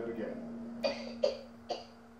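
Three short, sharp coughs a little under half a second apart, coming from a television show's soundtrack, over a steady low hum.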